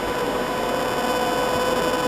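Steady hiss with a faint, even hum and two thin steady tones, the background noise of a microphone and amplifier system between sentences of speech.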